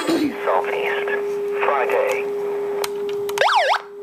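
Portable NOAA weather radio with AM band giving a steady hum-like tone, with faint voice-like sounds, then a brief whistle that sweeps down and back up in pitch near the end.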